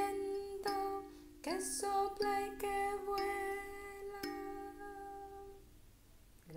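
Kalimba plucked in two-note chords under a woman's voice holding long sung notes, the final phrase of a song. The notes ring on and fade out shortly before the end.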